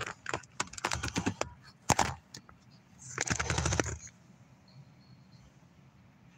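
Irregular clicks and taps from a phone being handled and set into a dashboard mount, with a denser clatter of clicking about three seconds in, then quiet cabin background.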